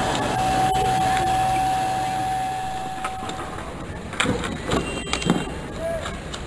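A fire engine's pump and hose running steadily with a held tone, spraying water, until the sound cuts out about three and a half seconds in. Then come a few sharp knocks and clatters.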